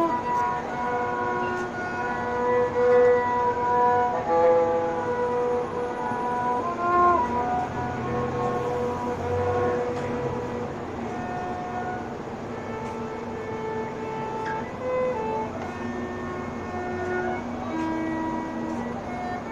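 Violin playing a slow melody of held notes, with a few notes sliding into the next.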